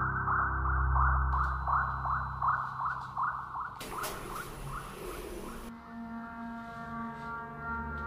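Electronic sound-effect score: a rapid series of short rising chirps, about three a second, over a low drone that drops out about two and a half seconds in. A noisy whoosh follows for about two seconds from around four seconds in, and steady held electronic tones take over after it.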